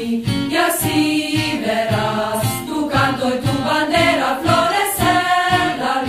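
A song: voices singing a melody over music with a steady beat.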